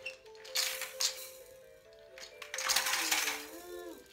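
Plastic toys rattling and clattering in two bursts as a toddler handles them, over a quiet background tune.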